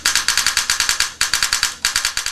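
Spyder Pilot electronic paintball marker dry-cycling under rapid trigger pulls: a fast run of sharp mechanical clicks, about a dozen a second, with a brief break a little after one second in.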